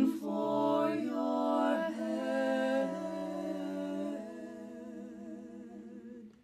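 Three women's voices, soprano, mezzo-soprano and alto, singing a cappella in harmony, holding long chords. The singing grows softer in steps from about halfway through and dies away right at the end.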